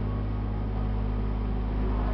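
Steady low hum with faint, even room noise and no music playing.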